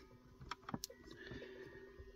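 A few sharp clicks from the rocker switch on the antenna's cigarette-lighter control, then a faint steady whir of the Harvest HD-330 screwdriver antenna's electric motor driving the antenna.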